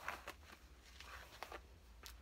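Faint, short swishes of a hairbrush pulled through long synthetic wig hair, a few strokes near the start, about a second in and again shortly after.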